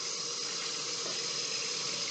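Kitchen tap running steadily into a metal colander while plantain leaves are rinsed in it by hand.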